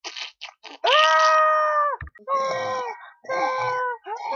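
A young person screaming: a few short hissing bursts, then one long high scream about a second in, followed by two shorter cries that fall away at the end.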